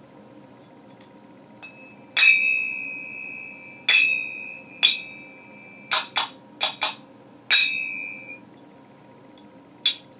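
A pair of brass finger cymbals (zills) struck together about nine times. The first clash, about two seconds in, rings on in one clear high tone for over three seconds. A quick run of four strikes follows around six to seven seconds, then another clash that rings briefly, and a last short strike near the end.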